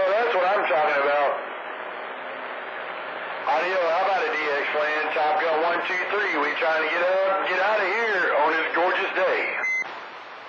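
A voice coming in over a CB radio receiver on channel 28 skip, thin and band-limited through the set's speaker over a bed of static. One short transmission breaks off after about a second, leaving about two seconds of static hiss. A longer transmission follows from about three and a half seconds and cuts off just before the end.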